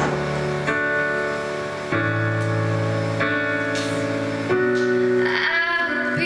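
Live piano and acoustic guitar accompaniment to a slow ballad, sustained chords changing about every second and a half between sung lines. A female voice comes back in near the end.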